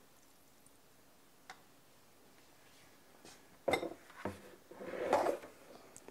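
Quiet at first, then a few sharp metal knocks and a short clatter in the second half: an Instant Pot's lid being lifted clear and set down.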